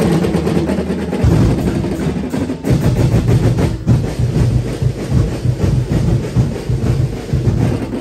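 Tribal drum ensemble playing a fast, loud percussion rhythm, with deep bass drums and rapid sharp strokes, starting abruptly.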